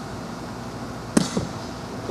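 A single sharp crack of a softball impact a little over a second in, followed a moment later by a quieter knock.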